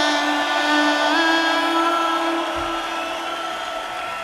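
A live reggae band's closing held chord: steady sustained tones that shift up a little about a second in and then slowly fade out as the song ends.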